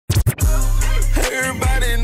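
Opening of a hip-hop trap track: a few quick sharp clicks right at the start, then a deep sustained bass that hits again near the end, under a gliding vocal line.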